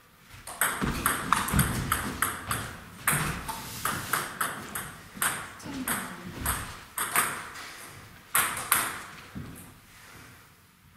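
Table tennis ball pinging off bats and the table, sharp clicks in several quick clusters with short pauses between them.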